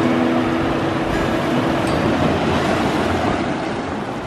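Surf washing onto a sandy beach, a steady rush of waves. The last held notes of guitar music die away in the first second and a half.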